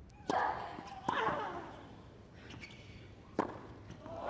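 Tennis ball struck hard by racquets three times during a rally, the first two hits each with a short grunt from the hitting player. The last hit comes about two seconds after the second.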